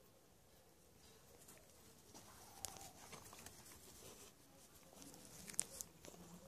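Near silence: faint outdoor ambience with a few soft clicks and light rustling.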